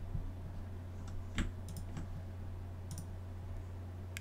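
A few faint, scattered computer mouse and keyboard clicks, made while a program is started and a browser is brought up, over a steady low electrical hum.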